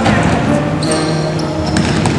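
Pop song playing, an instrumental passage between sung lines.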